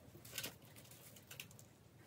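Faint rustling and crackling of stiff crinoline and sinamay mesh being handled, with a small crackle about half a second in and a few softer ones after the middle.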